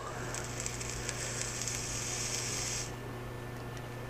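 V3 rebuildable atomizer's freshly wrapped coil firing, the e-liquid on its wet silica wick sizzling as a steady hiss for about two and a half seconds, then cutting off suddenly.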